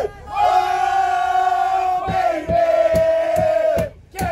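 A group of people singing loudly together, holding one long note and then a second, slightly lower one. Hand claps at about three a second join during the second note.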